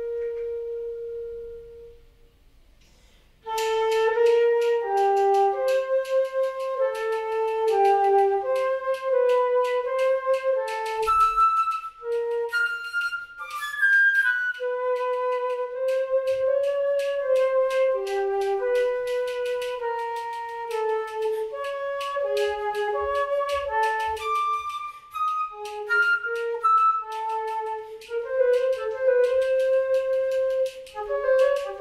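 Solo concert flute playing a contemporary Brazilian piece. A held note fades out and there is a short pause. About three and a half seconds in, a fast passage of short, changing notes begins, with many sharp clicks among the notes.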